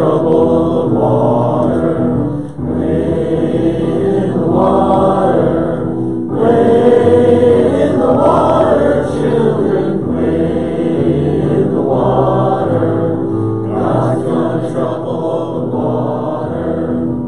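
A congregation of mixed men's and women's voices singing a hymn together, in phrases a few seconds long.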